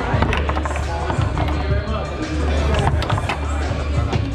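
Foosball table in play: repeated sharp clacks of the ball being struck by the hard plastic men and knocking off the rods and walls, several in quick succession. Background music with a steady low bass runs underneath.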